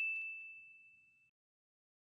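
A bright, single-pitched ding sound effect, the notification-bell chime of a subscribe-button animation, ringing out and fading away by about a second in.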